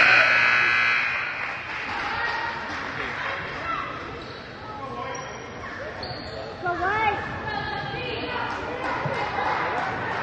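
Basketball gymnasium ambience during a dead ball: crowd chatter and voices echoing in the hall with a ball bouncing on the hardwood. A steady buzzer-like tone sounds for about the first second, over applause that dies away.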